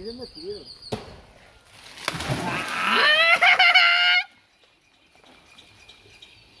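Water splashing as a person jumps feet-first into a river pool, with a high-pitched shriek over the splash. Both cut off suddenly just after four seconds.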